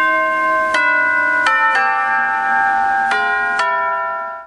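Tubular bells (orchestral chimes) struck one note after another, about six strikes in a slow melodic sequence. Each note rings on with its overtones under the next.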